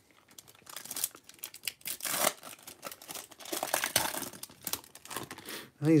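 A Topps Chrome baseball card pack's foil wrapper being torn open and crinkled by gloved hands: a dense run of crackling and tearing that lasts several seconds, loudest about two and four seconds in.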